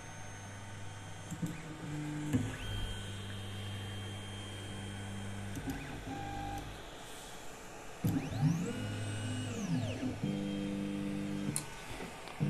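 3D printer's stepper motors homing the axes after a BLTouch sensor install: steady whining tones that jump in pitch as each axis starts, stops and changes speed. About eight seconds in, a sweep rises and then falls back as an axis speeds up and slows down. A few light clicks are heard along the way.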